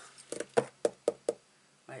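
About six light knocks in quick succession in the first second and a half: objects being shifted and knocked about on a crafting desk during a search for a finished card.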